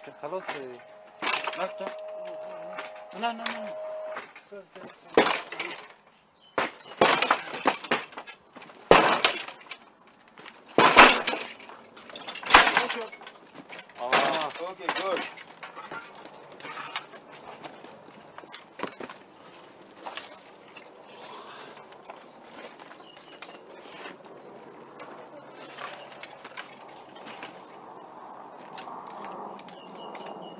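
A wooden plank door being battered and forced: a run of heavy bangs and cracks over about ten seconds, the loudest three near the middle, with shouted voices between them. A low steady hiss follows.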